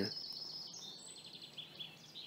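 Faint outdoor background of small birds chirping, with a high steady insect trill.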